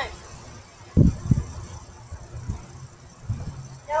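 Bouncing on a trampoline: low thuds of feet landing on the mat, two strong ones about a second in, then lighter ones in the middle and near the end.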